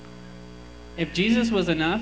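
Steady electrical mains hum through the microphone sound system. About a second in, a man starts speaking into a microphone, much louder than the hum.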